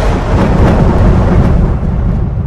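A loud, deep rumbling noise.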